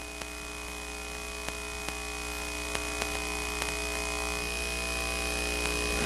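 Steady electrical hum with several constant tones, including a thin high whine, and a few faint ticks. It slowly grows louder, with no other sound.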